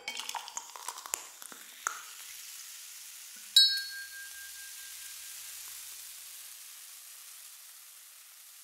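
A few small clicks, then a single bright ding about three and a half seconds in that rings on with a thin high tone, over a faint steady hiss.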